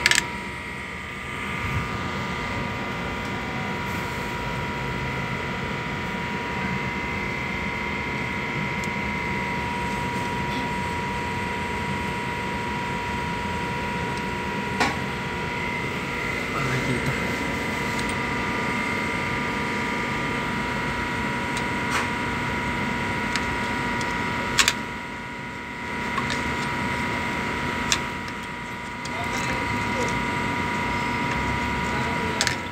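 A steady machine hum with a constant high whine, broken by a few sharp taps: one near the middle and two close together near the end.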